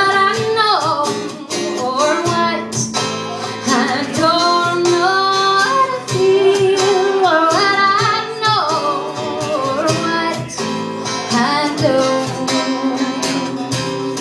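A woman singing a song with strummed acoustic guitar accompaniment, in phrases of held notes that rise and fall.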